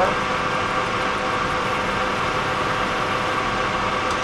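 Metal lathe running steadily, its chuck spinning a lightly clamped steel part whose face is pressed against a ball bearing held in the tool post to true it up: an even mechanical running noise with a faint steady hum.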